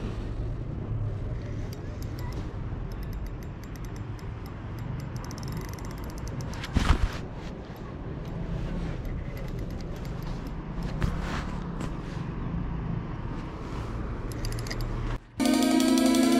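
Spinning reel being cranked, a fast faint ticking in several spells, over a steady low rumble of handling and wind on the camera microphone, with one sharp knock about seven seconds in. Music comes back in near the end.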